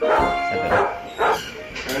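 A dog barking, about three short barks in the first second and a half, over background music.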